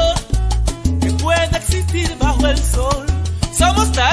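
Salsa erótica (romantic salsa) music playing, with a steady bass line, percussion and melodic lines over it.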